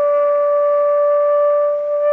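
Saxophone holding one long steady note.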